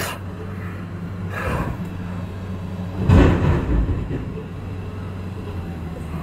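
Steady low hum of a car's running engine heard inside the cabin, with a short breath about a second and a half in and a louder, harsh breathy exhale about three seconds in from a man in pain with a leg cramp.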